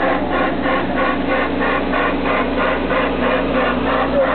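Steam-locomotive-style park train approaching, its engine running with a steady low hum under a rapid, even chugging of about four to five beats a second.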